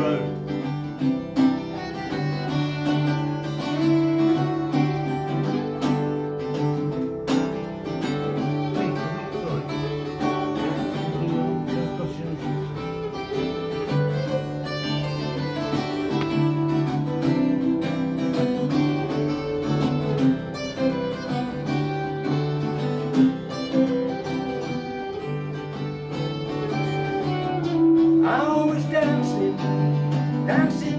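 Two acoustic guitars strummed together in a steady rhythm, the instrumental opening of a song, a little louder near the end.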